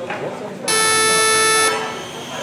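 Electronic start beep of an RC race timing system: a single loud, steady tone about a second long, starting and stopping abruptly, that signals the start of the race.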